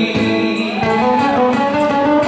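Live band music with guitars to the fore, playing steadily.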